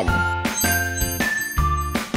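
Background music: a tinkling, bell-like melody of held notes over a steady bass beat.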